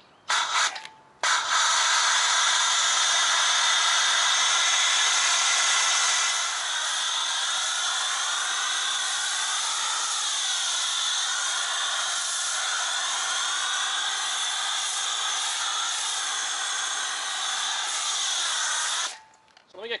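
MTM PF22 foam cannon on a pressure washer spraying snow foam: a short test burst, then a steady hiss of spray from about a second in. The hiss drops a little in level about six seconds in and cuts off shortly before the end.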